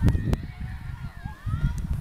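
Children calling and shouting at a distance across a football pitch, faint rising and falling cries, over a heavy rumble of wind on the microphone. Two sharp knocks come near the start.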